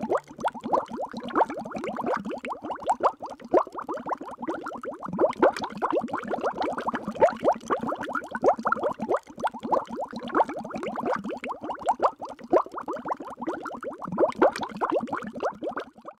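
Water bubbling: a dense stream of small bubble plops overlapping in quick succession, running steadily and stopping right at the end.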